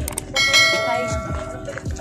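A bell chime sound effect struck once about a third of a second in, ringing with several clear tones that fade out over about a second and a half.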